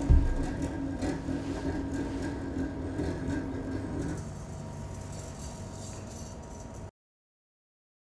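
Metal toy gyroscope spinning with a steady hum, with a low thump just as it begins. The main hum stops about four seconds in, leaving a fainter hum, and the sound cuts to silence near the end.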